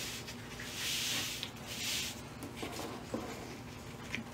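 Scissors cutting through a pattern piece and folded laminated cotton: two soft swishing cuts about a second apart, then a few faint clicks.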